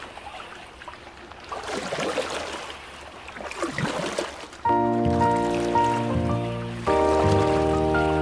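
Cartoon water sound effects: an oar splashing and swishing through river water in swells. About two-thirds of the way in, background music enters with sustained held chords, moving to a new chord near the end.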